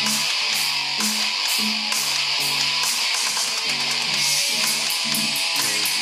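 Acoustic guitar strummed hard, chords struck in a steady rhythm of about two strokes a second, with quicker strokes near the end.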